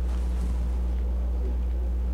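A steady low hum with no breaks or changes, and nothing sudden over it.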